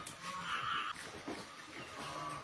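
Farmyard animal sounds from a pen of young half-breed wild pigs feeding, with one short high call about half a second in and fainter low calls around it.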